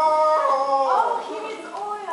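A person's voice holding one long, high howl-like note, which wavers and slides in pitch through the second half.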